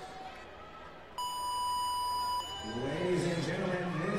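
Electronic start beep, one steady tone of a little over a second, signalling the start of a competition heat.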